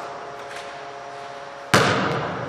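A basketball shot hitting the hoop: about three-quarters of the way through, a single sharp bang that rings on in the gym's echoing hall, after a quiet stretch of room tone with a faint steady hum.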